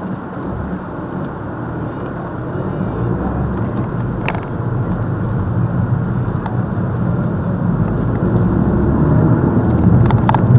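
A car's engine and road noise heard from inside the cabin, growing steadily louder as the car pulls away from a standstill and picks up speed.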